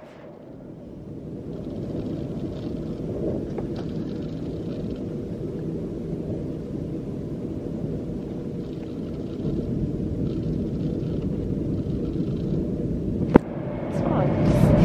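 Steady low rumble of a moving passenger train heard from inside the carriage, fading in over the first two seconds. A single sharp click near the end.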